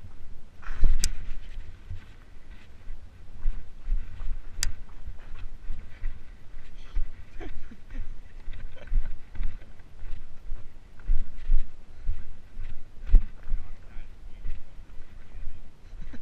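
Footsteps of someone walking on a rough trail, with the handheld camera being jostled: irregular low thuds every second or so and two sharp clicks in the first five seconds.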